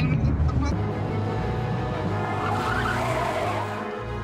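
Vehicle engine and road noise under a background music score, with a rougher noise swelling for about a second near the end.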